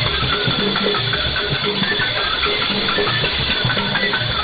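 Music with drums heard over a shortwave AM signal on 7254.9 kHz, most likely Voice of Nigeria before its broadcast begins. The sound is narrow and hissy, with a steady high whistle over it.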